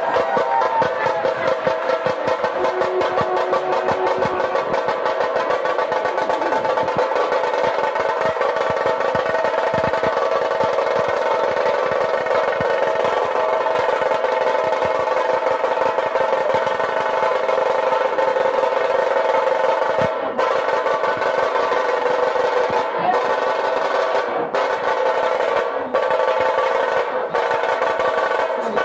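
Ceremonial drumming: a fast, continuous drum roll, with steady held tones sounding above it throughout.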